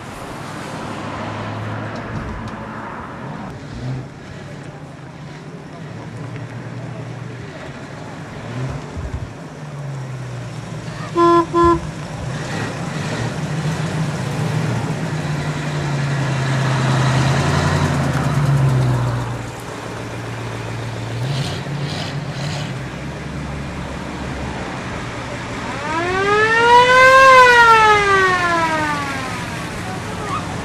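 Classic cars driving slowly past one after another, their engines running and swelling as each goes by. There are two short horn toots about eleven seconds in, and near the end a loud siren-like wail rises and falls once.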